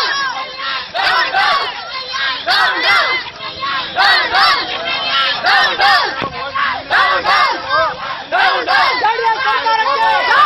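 A protesting crowd of men and women shouting slogans, many voices at once, loud throughout.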